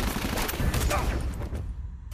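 A burst of gunfire, several shots in quick succession over a low rumble, stopping abruptly about a second and a half in.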